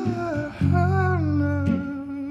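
A man humming a wordless melody that slides up and down in pitch, over low sustained guitar notes, with a single plucked note near the end.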